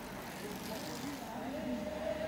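Voices of roadside spectators, not close, calling out, with one longer raised shout near the end, over steady outdoor background noise.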